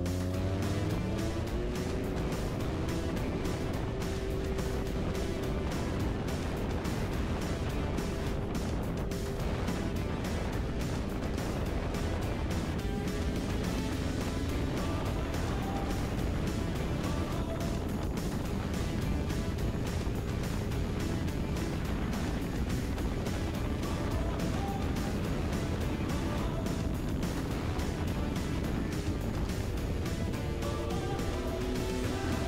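Snowmobile engine revving up as it pulls away, rising in pitch over the first second, then running steadily under way with the rush of track and wind. Background music plays over it.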